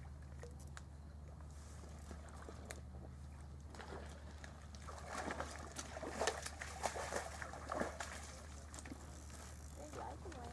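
Water splashing and sloshing at the shoreline as a hooked pink salmon is reeled in to the landing net, louder and busier from about four seconds in, over a steady low hum.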